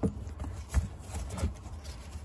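Handling noise as a lithium jump-starter pack is lifted out of its fabric carrying case: rustling of the case, with about three light knocks of the plastic unit against it.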